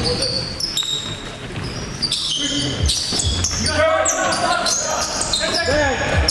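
Basketball bouncing on a hardwood gym floor: a few dull thumps from about halfway through and again near the end, with the echo of a large gym hall.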